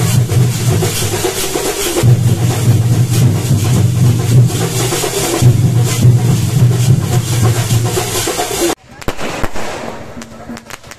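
Loud festival drumming of a Sinkari melam, chenda drums with clashing cymbals in a fast rhythm, over the voices of a dancing crowd. Near the end it cuts off suddenly to the sharp crackle of fireworks.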